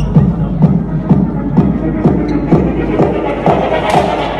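Techno played loud over a club sound system, a steady kick drum at about two beats a second under heavy bass, with a bright crash-like hit near the end.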